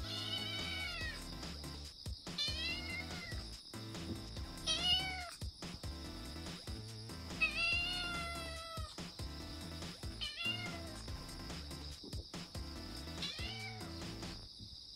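A tabby-and-white kitten meowing repeatedly: about six high-pitched meows that each rise and fall, the longest about halfway through, over background music.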